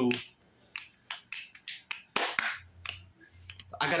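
A run of irregular sharp clicks, about a dozen over three seconds, with a short pause between some of them.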